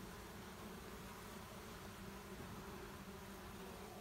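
Honeybees buzzing faintly and steadily around a hive entrance where a newly arrived swarm has settled, bees clustered at the entrance and flying about it.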